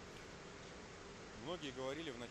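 Faint, distant voice in a large, echoing hall over a low steady background hiss. The voice comes in about one and a half seconds in.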